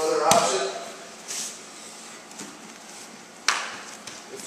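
Two grapplers shifting their bodies on a foam training mat, with a short exhaled breath a little over a second in and a single sharp slap about three and a half seconds in, the loudest sound.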